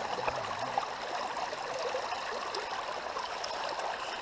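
Shallow river water running steadily over rocks and through a gold sluice box set in the current.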